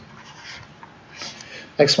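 Stylus scratching on a tablet screen while a curve is drawn: two short, soft strokes. Speech begins near the end.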